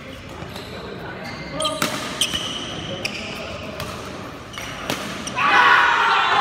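Badminton rally: rackets strike the shuttlecock about half a dozen times, with short high squeaks of court shoes on the floor. A burst of loud voices comes near the end as the rally ends.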